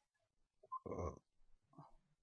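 A man's short, noisy breath close to the microphone about a second in, with a fainter breath sound near the end.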